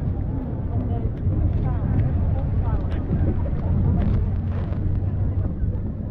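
Wind rumbling on the microphone, with voices of people nearby chattering faintly underneath.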